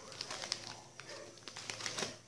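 Packet of ground coffee crinkling as it is handled and set down on a countertop: a quick run of sharp crackles, loudest about half a second in and again near the end.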